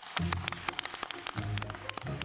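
Background music with two deep, held bass notes, over a dense patter of hand-clapping.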